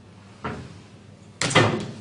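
Knocks from the dishwasher's plastic wash pump filter being handled and set down: a faint knock about half a second in, then a louder clunk with a short ring near the end.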